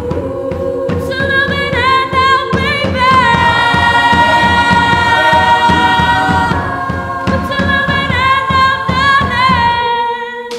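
Women's choir singing in parts, a high chord held loud through the middle, over a steady low rhythmic pulse.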